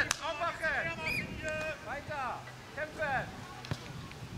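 Children's voices shouting and calling out across a football pitch, several short high-pitched calls one after another. A sharp thud comes at the very start, and a fainter knock comes near the end.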